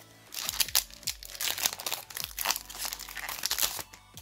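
Foil Yu-Gi-Oh booster pack wrapper crinkling as it is handled and torn open, a dense run of irregular crackles that stops just before the end.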